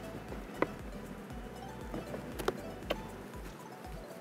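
A metal hive tool levering a wooden crown board off a beehive: a few sharp clicks and cracks, the clearest about half a second in and two more near the end. Quiet background music runs underneath.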